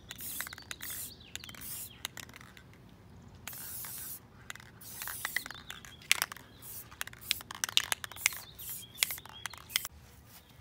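Aerosol spray paint can hissing in several short bursts during the first five or so seconds, then a run of sharp clicks and ticks in the second half.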